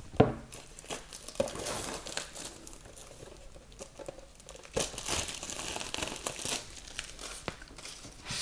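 Wrapping around a steelbook crinkling and tearing as it is pulled off by hand, in stretches of rustling with scattered clicks and one sharp knock just after the start.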